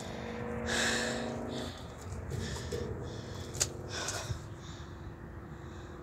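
Heavy breathing close to the microphone: a loud breath about a second in and another around four seconds, with one sharp click between them. A faint steady hum lies underneath for the first couple of seconds.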